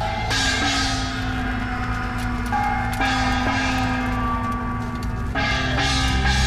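A hand gong struck three times, about two and a half seconds apart, each hit ringing on and fading.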